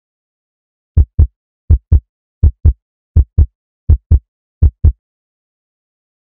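Heartbeat sound effect in a channel intro: six low lub-dub double thumps, one pair about every three-quarters of a second, starting about a second in.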